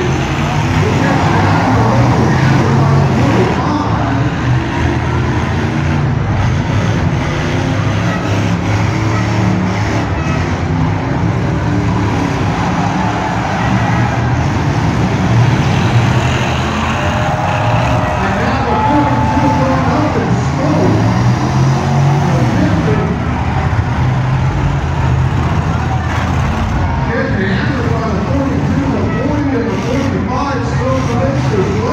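Several demolition derby cars' engines running and revving at varying pitch as the cars ram one another, heard over the voices of a large crowd.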